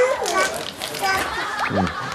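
A toddler's high voice babbling and asking for a snack ("kkakka"), with a man's short "eung" in reply near the end.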